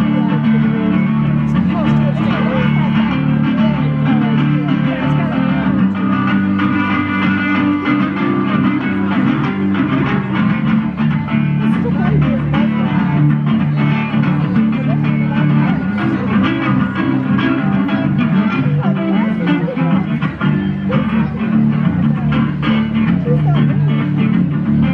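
Solo amplified guitar playing an instrumental break in a blues song, heard through a stage PA: plucked notes with a strong low bass line beneath them.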